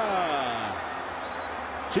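A man's voice trailing off in one long falling exclamation over stadium crowd noise, then just the crowd, with a short sharp click near the end.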